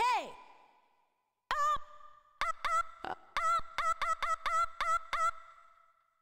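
Korg Triton VST 'FemaleVoice1 SW1' preset from the Trance Attack expansion playing a sampled female vocal. It opens with one vocal hit that falls in pitch, then a run of about a dozen short, clipped vocal notes at one pitch, roughly three to four a second, stopping shortly before the end.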